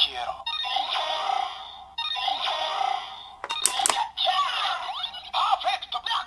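Kamen Rider Ex-Aid DX Gamer Driver toy belt, with a Gashat Gear Dual loaded, playing its electronic transformation sounds: a synthesized voice calls out over a looping game-style jingle. The sounds start suddenly, a short sweeping effect comes a little past the middle, and the lever-open call 'Perfect Knockout!' comes near the end.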